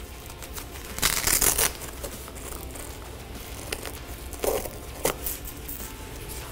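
Hook-and-loop (Velcro) straps being pulled open on a Warrior Ritual G3 goalie trapper: one strong rip about a second in, then two shorter, fainter rips a little before the end.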